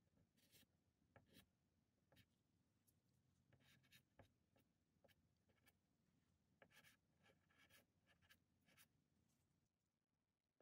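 Faint, scattered short strokes of a soft pastel stick scratching across non-sanded toned paper, dragged lightly in quick marks to build up the foam splash.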